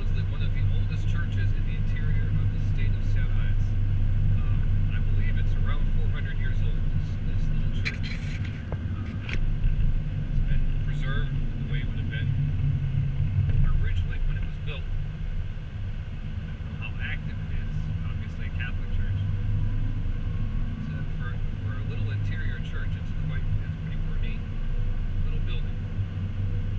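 Steady low rumble of a car's engine and tyres heard from inside the cabin while driving on a paved road, with a few short knocks about eight to nine seconds in.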